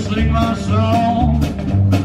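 Live band playing a rock-and-roll/country number: electric guitar lines bending in pitch over a bass line that steps from note to note on the beat.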